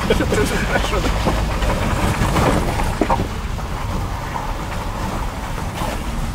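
Inside a car's cabin, a steady low rumble of the engine and tyres as it drives over a rutted lane of packed snow and slush, with a few short knocks from bumps around the middle.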